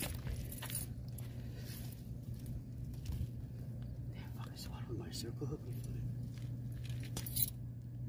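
Light clicks and scrapes of a hoop net and fishing line being handled on pavement around a landed striped bass, over a steady low hum, with a sharp click near the end.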